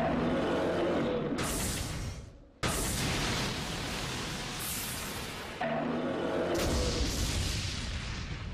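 Cartoon battle sound effects for a spinning-wheel special-move charge: loud rushing whooshes and low rumbling impact noise over dramatic music. The rush cuts out briefly about two and a half seconds in and comes back suddenly, with another surge near six seconds in.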